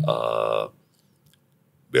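A man's drawn-out, held hesitation sound, one vowel lasting well under a second, followed by a pause.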